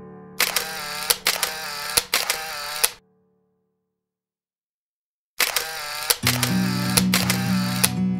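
Edited-in camera-shutter sound effect, a quick run of sharp clicks repeated in two bursts separated by about two seconds of dead silence. Acoustic guitar music starts up under the second burst.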